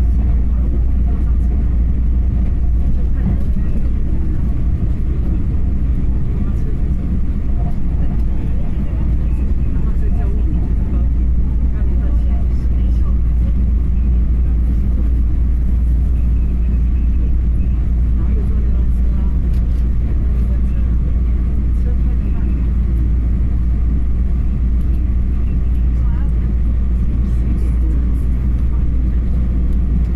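Steady low rumble of an EMU3000 electric multiple unit running at speed, heard from inside the passenger cabin.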